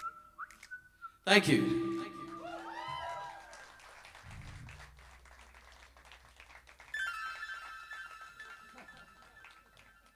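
Sparse live band music trailing off at the end of a song: a sudden loud hit about a second in that fades out, some sliding synth sounds, then a held keyboard chord about seven seconds in that fades away.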